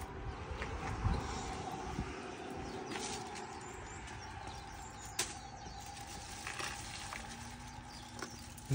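Quiet outdoor background with a faint steady hum, broken by a few light clicks and crinkles of a plastic bag and a plastic meat tray being handled, the sharpest about five seconds in.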